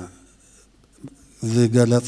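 A man speaking into a microphone in a hall, resuming after a pause of about a second and a half; a faint click comes just before he starts again.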